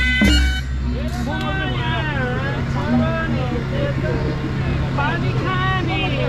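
A sanai (Nepali double-reed pipe) holds a note over hand-drum strokes, and both stop about half a second in. After that, people's voices talk and call out over a steady low hum.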